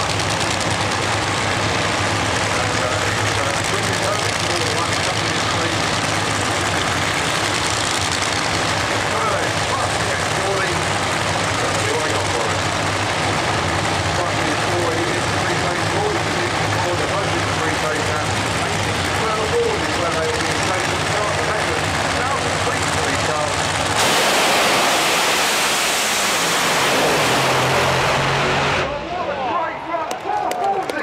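Nitromethane-burning Fuel Funny Car engines, supercharged V8s, idling loud and steady on the start line. About 24 seconds in comes the full-throttle launch, a far louder blast for about five seconds as the cars leave, which then drops away suddenly.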